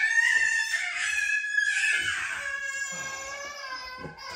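A high-pitched voice holding one long note, slowly fading, with a crowing quality.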